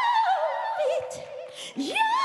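A woman singing gospel live: she holds a high belted note with vibrato, then breaks into a descending melismatic run. Near the end she scoops sharply up from low into a new high note around C#6.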